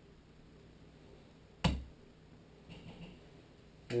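A hand tool knocks once, sharply, about one and a half seconds in; the rest is quiet room tone.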